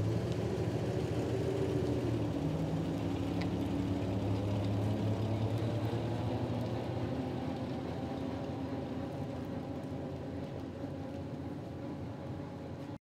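Engine of a vintage station wagon running as the car drives slowly past, a steady low hum that fades gradually.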